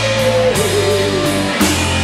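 Live blues-rock band playing an instrumental passage: a held lead guitar note bends down about half a second in, over bass notes and drums with cymbal hits.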